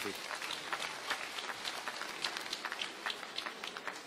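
An audience applauding with many hand claps, which begin to thin out near the end.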